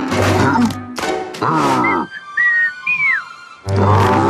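Cartoon soundtrack music with a sliding tone that falls in pitch about one and a half seconds in. The music then breaks off for two short whistles, the second rising and then falling, before loud music comes back just before the end.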